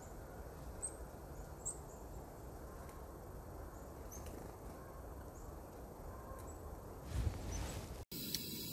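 Quiet outdoor woodland ambience: a low steady rumble with a handful of short, high bird chirps scattered through it. A brief louder low rush comes near the end.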